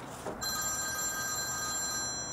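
Mobile phone ringing: a steady electronic ring of several high tones held together, starting about half a second in.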